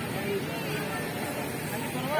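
Indistinct voices of people talking in the background, faint and overlapping, over a steady outdoor murmur.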